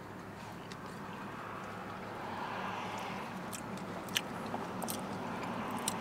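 Quiet eating sounds: chewing, with several sharp clicks of a plastic fork against a plastic takeout tray in the second half, over a steady faint background hiss.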